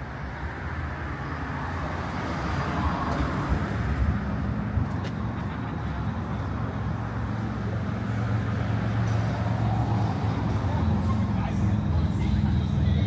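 City street traffic: a motor vehicle's engine running nearby, growing gradually louder.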